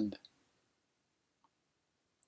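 The tail of a man's spoken word, then near silence, with one faint click about one and a half seconds in.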